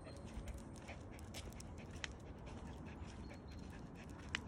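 Faint sounds of a Shiba Inu walking on a leash over asphalt: light, irregular clicks of its paws and claws on the road, several a second, with one sharper click about halfway through.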